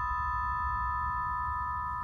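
Sustained ringing sound effect from a TV drama's background score: a few steady high pitches held together, unchanging.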